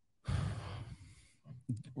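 A man sighing into a close microphone: one breath out of about a second, starting just after the pause begins, followed by a few small mouth sounds before speech resumes.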